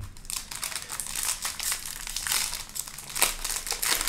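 Plastic foil wrapper of a Topps baseball card pack crinkling and crackling as hands tear it open and peel it off the cards.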